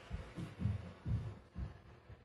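Dull low thumps, about two a second at uneven spacing, with faint rubbing: handling noise from an RC truck being held and worked on while a screw is turned by hand into its plastic suspension arm.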